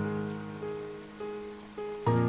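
Solo piano: a low chord struck just before this moment rings and fades, with soft single notes added about half a second in, at one second and near the end. Under it, steady rain falling on a surface.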